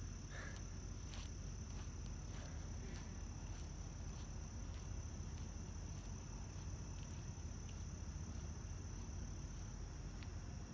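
Steady high-pitched chorus of crickets, with faint footsteps on the pavement in the first few seconds.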